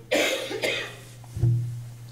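A man coughing twice in quick succession, then a short low throat sound about a second and a half in, over a steady low electrical hum.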